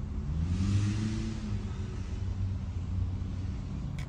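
Road traffic rumble with a motor vehicle passing about a second in, its engine note rising and then easing off.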